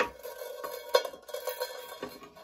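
Steel guitar string scraping and clinking against a tin can as it is fed through a small punched hole in the can's bottom, the can ringing with a steady metallic tone. Sharp clinks come at the start and about a second in.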